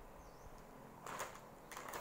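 Paper rustling twice as a workbook page is lifted and turned, briefly, about a second in and again near the end.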